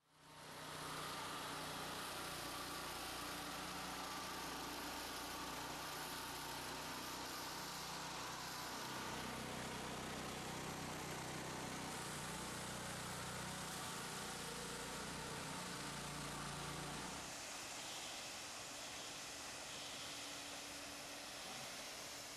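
Electric concrete joint saw and its dust vacuum running steadily while a floor joint is cut open, a constant mechanical hum and hiss. It fades in at the start, and the low hum drops away about three-quarters of the way through.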